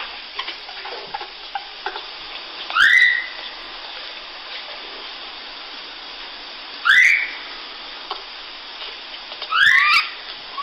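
Infant rhesus monkey calling: three short rising cries, about three to four seconds apart, over a steady hiss.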